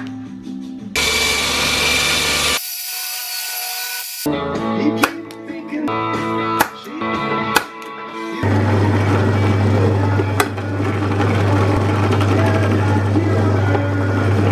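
Workshop power tools over background music: a bench belt sander runs briefly, loud and harsh, a second in, and in the second half a drill press motor runs with a steady low hum. A few sharp clicks come in between.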